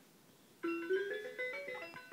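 Electronic farm sound toy playing a short tune of simple beeping notes that step up and down in pitch, starting about half a second in.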